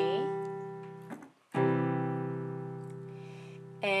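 Piano playing a C major chord in root position (C, E, G), ringing and fading; the chord is struck again about a second and a half in and slowly dies away until near the end.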